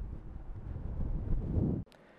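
Wind buffeting the camera's microphone: a low, rumbling noise that cuts off abruptly near the end.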